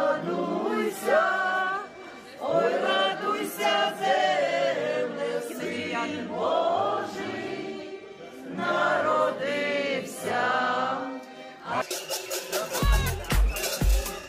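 A group of men and women singing a Ukrainian Christmas carol (koliadka) together without accompaniment. About twelve seconds in, the singing gives way to dance music with a steady bass beat of about two pulses a second.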